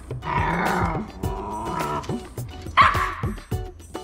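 Welsh Terrier puppy vocalizing: one drawn-out whiny call lasting about a second and a half, then a short, sharper yip about three seconds in, a sound of sulky complaint. Background music with a steady beat runs underneath.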